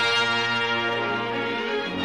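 Orchestral film score with brass holding a sustained chord, which fades near the end as a new chord comes in.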